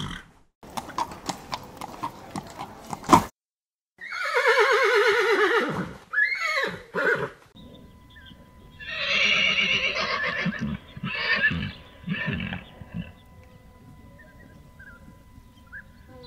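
Horses neighing. A run of sharp clicks and knocks is followed by two loud whinnies that fall in pitch, then a cluster of shorter neighs, before it goes quieter near the end.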